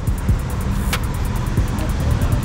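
Street traffic at a city intersection: a steady wash of car engines and tyres, with one sharp click about a second in.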